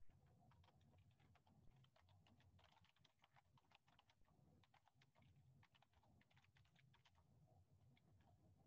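Faint computer keyboard typing: quick, irregular keystrokes.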